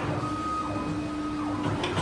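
Heavy-duty automatic cable cutting and stripping machine running: a steady motor whine from its feed drive that stops about three-quarters of the way through, followed by a short click.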